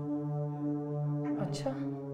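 Background film score: a low, sustained brass-like drone of held notes that moves to a new chord about one and a half seconds in. A short noisy burst sounds at the change.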